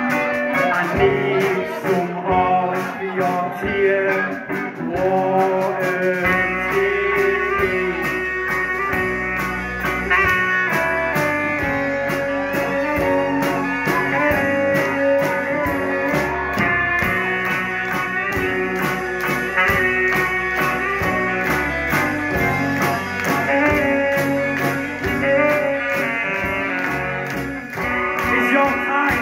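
Live rock band playing an instrumental section with electric guitars, drums and a saxophone melody; the bass comes in heavily about six seconds in.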